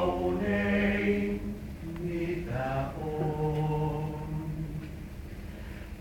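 Male vocal quartet singing a cappella in close harmony, holding long chords that change a few times and grow softer toward the end.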